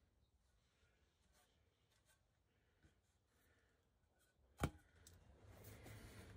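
Near silence, broken by a single sharp knock about four and a half seconds in as a cut wooden board is set down, followed by faint handling noise.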